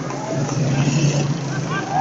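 Open-air ambience of distant voices calling out across a football pitch, over a low steady hum of motor traffic that swells briefly about half a second in.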